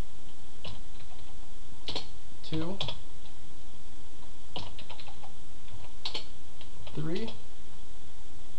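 Computer keyboard typing, keys struck in short irregular runs.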